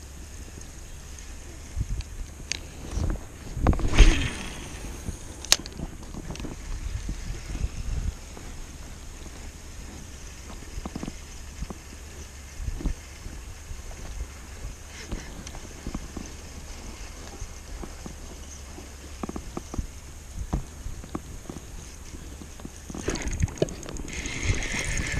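Spinning reel being slowly cranked to drag a jig along the bottom: faint scattered clicks and handling knocks, louder around three to four seconds in, over a low steady rumble.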